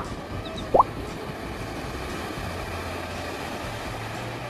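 Ocean surf breaking on the shore, a steady rushing noise, with two short rising chirps in the first second.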